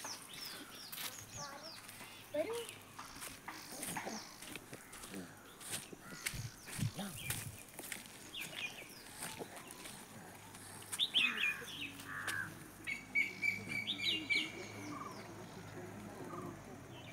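Birds chirping and calling repeatedly from the surrounding trees and bushes, loudest about two-thirds of the way through. Scattered light clicks and crackles come from footsteps on a dry, leaf-littered path.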